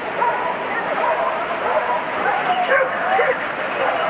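Many overlapping short yelps and whines, each rising and falling in pitch, with no beat underneath.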